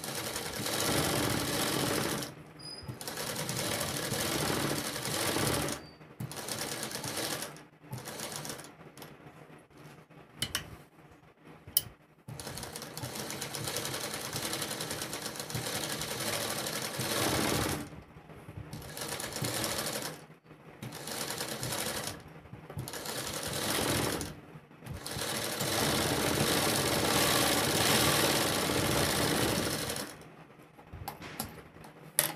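Black straight-stitch sewing machine stitching a kurti neckline, running in stretches of a few seconds with brief stops as the cloth is turned along the curve. Two sharp clicks come in one of the pauses near the middle.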